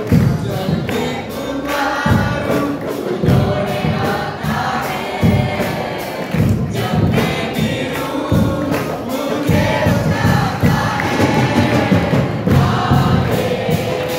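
Group of worship singers on microphones singing a church song, with a congregation joining in and a steady beat that runs through it.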